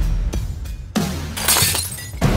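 Glass shattering on a hard floor: a low hit about a second in, then a bright crash of breaking glass, over dark trailer music.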